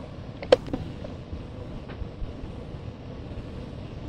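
Steady rumbling background noise with a few faint clicks, one sharper click about half a second in.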